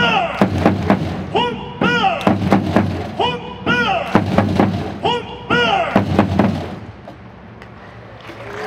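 Baseball cheer song over the stadium loudspeakers: a short sung chant phrase repeated again and again over hard drum hits. It stops about seven seconds in.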